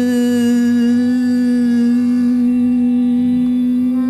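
A male vocalist holding one long, steady sung note at a single pitch, in the style of an Indian classical raga demonstration.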